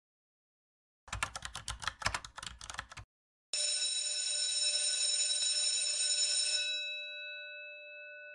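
Typing sound effect: a quick run of key clacks lasting about two seconds, then a bell-like ring that starts suddenly, holds steady for about three seconds and fades away near the end.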